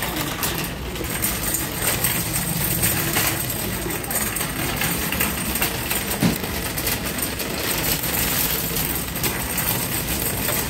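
Metal shopping cart rolling across a concrete floor, its wire basket and wheels rattling and clicking steadily.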